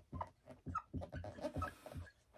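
Dry-erase marker squeaking and tapping against a whiteboard in a quick run of short strokes as letters are written.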